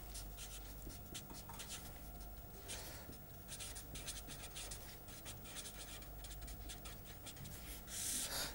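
Permanent marker writing on paper: a faint run of short, quick strokes as a heading is written out and then underlined.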